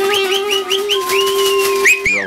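Whistling through cupped hands: a run of quick rising swoops, then a held high note and a last upward glide near the end, over a steady low held instrument note from a busking band.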